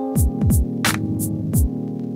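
Electronic hip-hop beat played live from a sampler: deep bass notes that slide down in pitch and sharp drum hits over a held synth chord. The drums and bass stop near the end, leaving the chord sounding with a steady hum.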